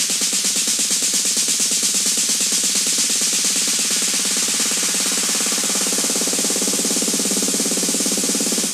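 Electronic dance music: a fast, even drum roll with the bass cut out, under a bright hiss.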